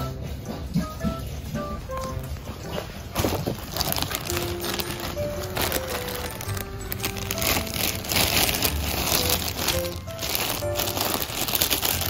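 A thin clear plastic bag crinkling and rustling as a ferret pushes into it and a hand crumples it around the ferret, starting about three seconds in and coming in bursts. Light background music plays throughout.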